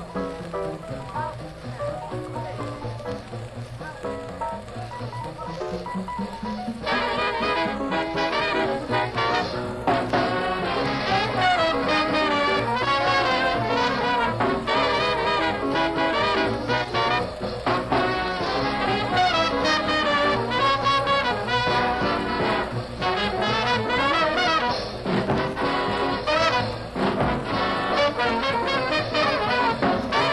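Swing big band of trumpets, trombones, saxophones, piano, guitar, bass and drums playing, from a 1940s live recording. The first seven seconds or so are lighter, then the full band with brass comes in louder.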